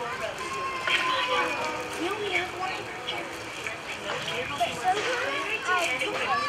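Several children's voices sounding at once and overlapping, one pitch held for about a second early on.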